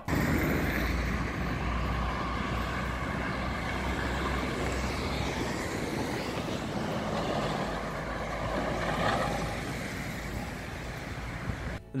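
City street traffic noise recorded on a phone's built-in microphone: a steady low rumble and hiss of cars passing, swelling slightly about nine seconds in.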